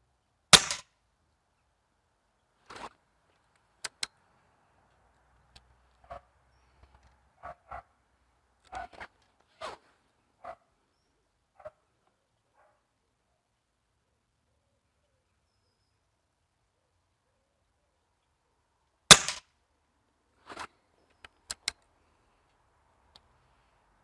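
Two shots from an Air Arms S400 PCP air rifle, a sharp crack about half a second in and another near the end, with faint metallic clicks and knocks of the rifle being cocked and reloaded between and after them.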